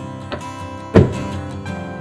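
Background acoustic guitar music, with a single sharp clunk about halfway through: a Toyota Land Cruiser's door locks releasing as a hand reaches into the smart-entry door handle.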